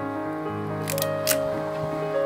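Piano background music, over which a Yashica digiFilm Y35 toy camera clicks as its top-plate controls are worked: a quick pair of clicks about a second in, then a sharper single click a moment later.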